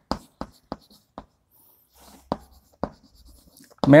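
Chalk on a blackboard as a word is written: a string of short, sharp taps and scratches at an uneven pace, with brief quiet between strokes.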